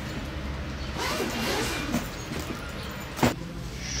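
Zipper of a fabric suitcase being pulled open: a rasping hiss for about a second and a half, then a single sharp click near the end.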